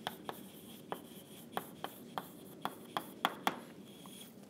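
Chalk on a blackboard as a line of text is written: about a dozen sharp, irregularly spaced taps with faint scraping between them. The taps stop shortly before the end.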